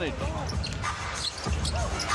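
A basketball being dribbled on a hardwood court, with low thuds over a steady arena crowd noise.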